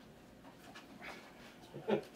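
A quiet room with a person's faint breathy exhale about a second in, then a short voiced sound near the end.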